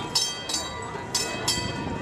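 Shod hooves of a draft horse pulling a streetcar, clopping on the street at a walk: sharp, slightly ringing strikes in pairs, about one pair a second.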